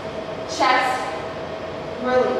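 A woman's voice calling out drawn-out words about every second and a half, over a steady faint hum.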